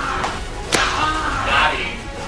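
A single sharp whip crack about three-quarters of a second in, followed by a brief cry.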